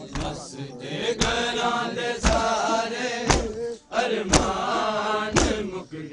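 A group of men chanting a Punjabi noha line in unison, with loud, sharp hand strikes about once a second: the rhythmic chest-beating (matam) that keeps time with the chant.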